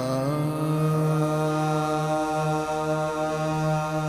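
Qawwali singing: a male voice finishes a wavering, ornamented phrase and then holds one long steady note over a steady low drone.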